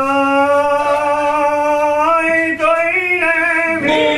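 Genoese trallalero: a small group of men singing unaccompanied in close harmony, holding a long note that steps up in pitch about halfway through and again a second later.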